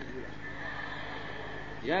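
Steady low electrical hum with a faint, steady high-pitched whine under it: the recording's background noise in a pause between spoken phrases of a sermon.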